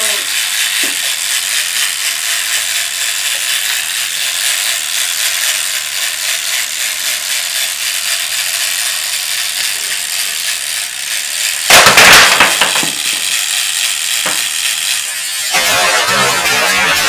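Mr. Pop game's timer ticking steadily while plastic face pieces are pressed onto the head. About twelve seconds in, a sudden loud clatter as the timer runs out and Mr. Pop springs up, throwing the pieces off, with another small knock of a piece landing. Music starts near the end.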